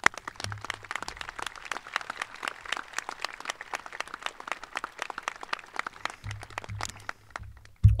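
Crowd applauding, many hands clapping together, thinning out near the end.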